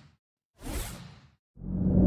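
Whoosh sound effects of an animated logo intro: a short airy swoosh about half a second in that fades away, then a deeper whoosh that swells louder toward the end.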